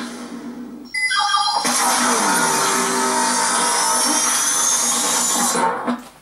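Soundtrack of a TV advert or channel promo: music and sound effects, with a rising high whine from about two seconds in, cutting off shortly before the end.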